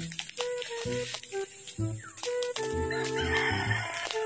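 Background music with a simple melodic line, and a rooster crowing over it for about a second past the middle.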